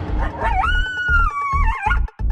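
Intro music with a low, repeating drum beat, over which a single canine howl rises about half a second in, holds, then wavers and drops away near the end.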